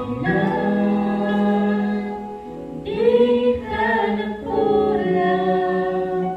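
A mixed vocal trio, one male and two female voices, singing a Tagalog gospel song together into microphones, holding long notes in harmony.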